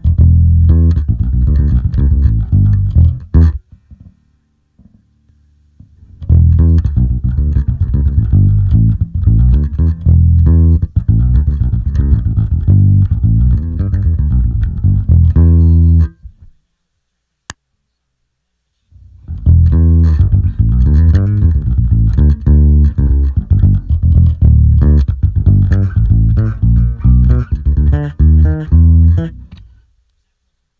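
Six-string electric bass guitar played through an Eden WTDI preamp pedal. It plays riffs and runs in three passages, with a short faint break a few seconds in and a longer silent break just past halfway, broken by a single click.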